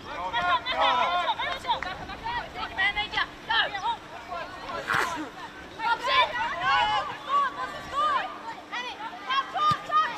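Women footballers shouting calls to each other across the pitch during open play: many short, high-pitched shouts, with one sharp knock about halfway through.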